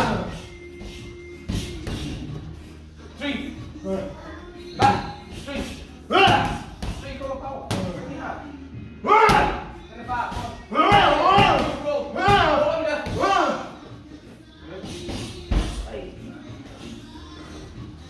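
Boxing gloves punching focus pads: several sharp smacks at irregular intervals, over background music with a voice.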